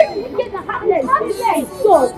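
Several people's voices talking and exclaiming over one another, high-pitched and overlapping so that no words stand out.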